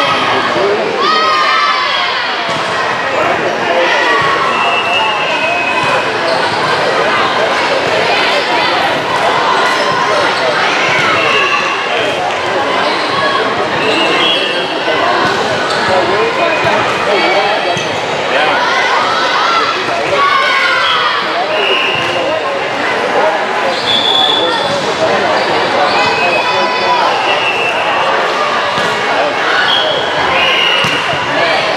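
Busy indoor volleyball gym: many voices chattering and calling out, volleyballs bouncing and being hit, and short high squeaks, all blended into one continuous echoing din.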